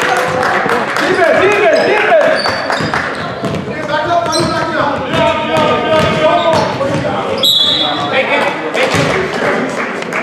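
Basketball game in a gym: the ball bouncing on the hardwood, sneakers squeaking and voices shouting across the hall. A short, high whistle blast comes about seven and a half seconds in, as play stops.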